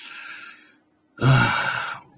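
A man sighing: a soft breathy exhale, then after a short pause a louder voiced sigh in the second half.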